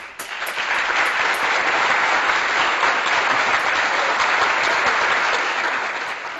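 A steady round of applause, dense hand clapping that fades out near the end.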